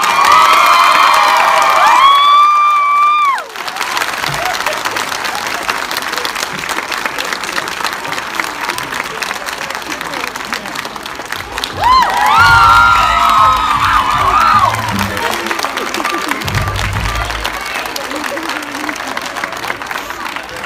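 Audience in a movie theatre cheering and applauding. High shrieks and whoops come at the start and again about twelve seconds in, with steady clapping in between.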